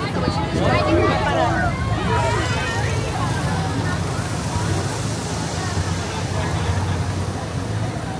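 Busy city street ambience: passers-by talking, clearest in the first few seconds, over a steady low rumble of traffic.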